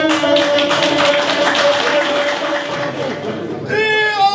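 A gusle, the bowed one-string fiddle, holds a note under scattered clapping for about three seconds. Near the end a group of men break into ganga, the loud close-harmony singing of Herzegovina.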